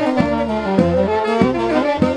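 Wedding folk band playing live: a saxophone carries the melody over accordion and a moving bass line with a steady beat.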